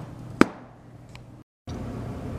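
A single sharp metal clack about half a second in, as a steel bar is knocked against a drill press vise, followed by a faint click; the sound drops out briefly near the middle.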